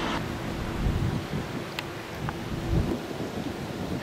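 Wind buffeting an outdoor microphone in low, uneven rumbles over a steady hiss of outdoor background noise, with one faint click just before the middle.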